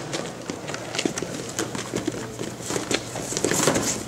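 Wrestling shoes scuffing and tapping irregularly on a foam wrestling mat as wrestlers move in stance and shoot in for a takedown.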